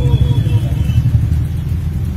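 A low, uneven rumble.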